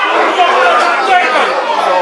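Several men's voices shouting and calling over one another at a football match during play.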